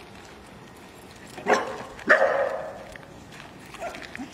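A dog barks twice, about a second and a half in and again half a second later, the second bark longer.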